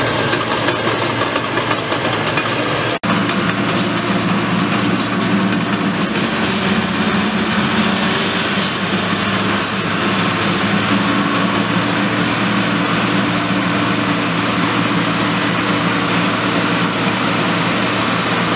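Small crawler bulldozer's diesel engine running steadily under load as it pushes drainage gravel, with scattered light ticks of track and stone clatter.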